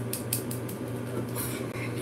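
A few faint, sharp plastic clicks of a small Faber-Castell pencil sharpener being handled and worked at while someone tries to open it to empty the shavings, over a steady low hum.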